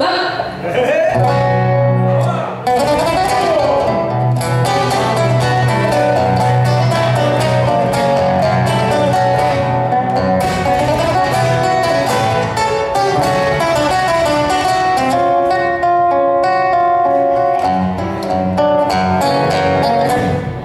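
Nylon-string acoustic guitar (violão) played fingerstyle in a gaúcho milonga style: a dense run of plucked melody notes over a held bass. A singer's voice carries through the first few seconds.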